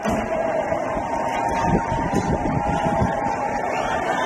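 Isha call to prayer from a distant mosque loudspeaker, one long held note, over a steady rumble of outdoor street noise picked up by a phone.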